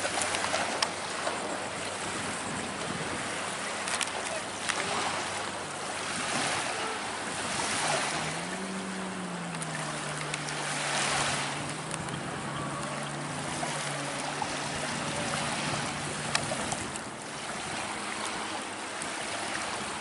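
Atlantic surf washing on the beach, a steady rush that swells and eases every few seconds, with some wind on the microphone. A low steady motor hum sounds from about eight seconds in until about sixteen seconds, rising briefly in pitch just after it starts.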